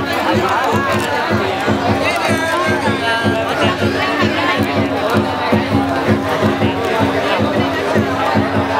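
Drum beating a fast, steady rhythm, about four beats a second, under festival music and the voices of a crowd of spectators.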